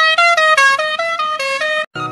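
A musical vehicle horn playing a tune: steady, reedy notes stepping up and down in pitch several times a second. It cuts off abruptly near the end.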